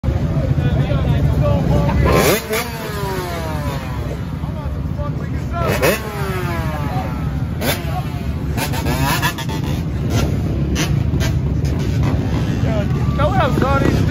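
Several dirt bike engines running at idle, with repeated throttle blips that rise sharply and fall back, the first about two seconds in and others near six and eight seconds.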